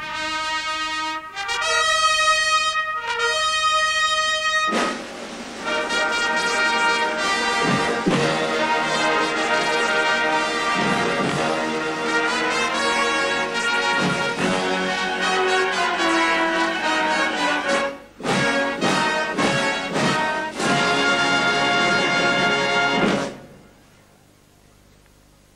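Military brass band playing: a few held, separated notes open it, then the full band comes in about five seconds in and plays dense chords. There is a brief break near eighteen seconds, and the music stops just before the end.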